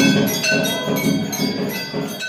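Temple bells rung fast for the aarti, about three strikes a second, with ringing metallic tones and a low beat under each strike, slowly getting quieter.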